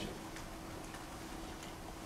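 Room tone: a faint steady hum with a few faint, irregular ticks.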